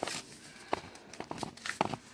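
Fingers handling and picking at a sealed paper envelope, trying to open it: a few short paper crackles and taps.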